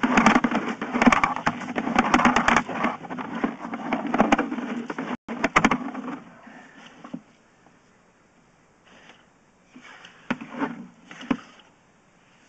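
Rapid rattling and scraping clatter of a sewer inspection camera's push cable being fed quickly down the line, dense for about six seconds, then stopping, leaving a few single knocks.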